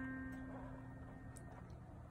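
A single note C, around middle C, played on a keyboard sound through a MIDI keyboard, ringing faintly and fading out over about a second and a half.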